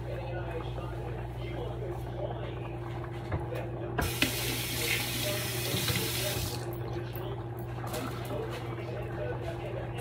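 A kitchen water tap runs for about three seconds in the middle, turned on suddenly and then off, over a steady low hum.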